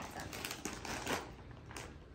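Snack packets being handled: irregular light clicks and crackles of plastic wrappers.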